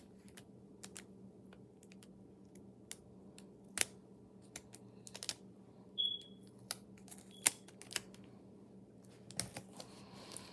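Clear adhesive tape and paper cutouts being handled and pressed down on a wooden table: scattered crinkles and sharp clicks, with a short high squeak about six seconds in and the sharpest tick about seven and a half seconds in.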